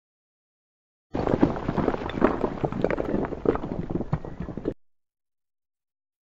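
A dense run of irregular thuds and crackles lasting about three and a half seconds, starting about a second in and fading out, laid over the logo intro as a sound effect.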